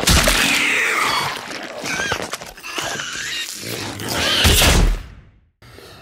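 Loud added spooky sound effects: a sudden rush of noise with swooping squeals through it, swelling to a deep rumble near the end and then cutting off sharply.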